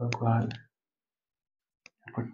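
A man's voice speaking briefly, then dead silence, with one short click near the end.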